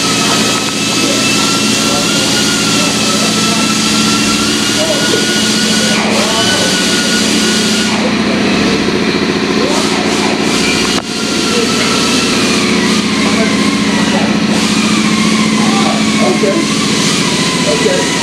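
A steady mechanical hum with a thin whine whose pitch drifts slowly down, with a brief dip in loudness about two-thirds of the way through.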